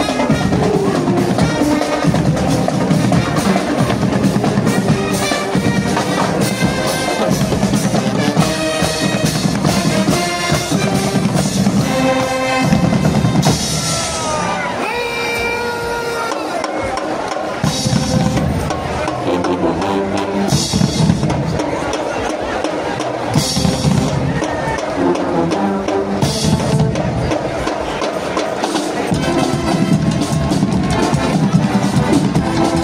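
Marching band playing live: marching snare drums and bass drums keep a driving beat under a brass melody.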